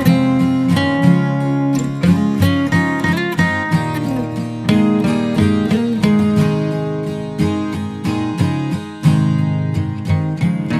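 Background music played on acoustic guitar: a quick run of plucked and strummed notes with a few sliding notes in the middle.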